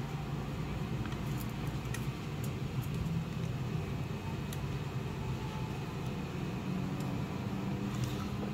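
Steady low background hum, with a few faint light clicks as small 3D-printed plastic chassis parts are handled and pressed together.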